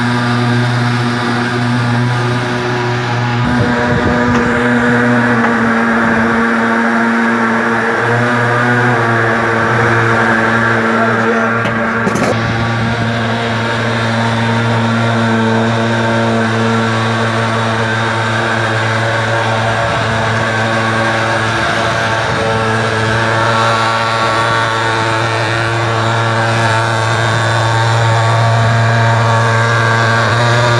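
Small engine of a portable fumigation fogger running steadily at one even, high speed.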